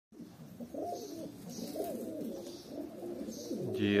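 Several domestic pigeons cooing together, their low warbling calls rising and falling and overlapping throughout.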